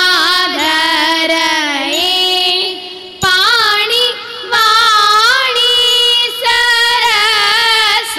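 Female voice singing a Thiruvathira song in a Carnatic-style melody with musical accompaniment. The singing runs in long phrases, with short breaks about three seconds in and again about halfway.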